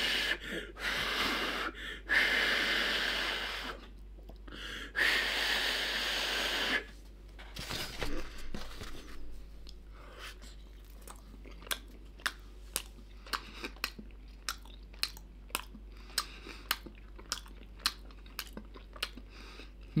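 Three long breaths blown onto a hot microwaved meat-and-barley pastry pocket to cool it, each lasting about two seconds. Then a toothless man gums it slowly, with regular mouth clicks about one to two a second.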